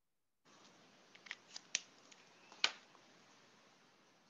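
A few sharp plastic clicks and taps, the loudest about two and a half seconds in, as a black fineliner pen is set down and a blue marker is picked up.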